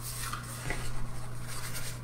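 Quiet room tone with a steady low hum and a faint click a little past half a second in.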